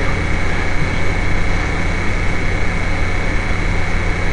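Steady background noise of a lecture-hall recording: an even hiss with a low hum and a thin, high, steady whine, unchanged for the whole stretch.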